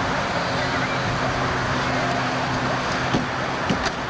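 A steady low hum under outdoor background noise with indistinct voices, and a few sharp clicks near the end.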